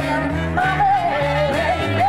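Live blues band playing: upright bass stepping through its notes and drums under a lead melody line that is held and bends in pitch.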